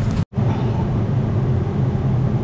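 A steady low mechanical hum, broken by a brief silent dropout about a quarter second in.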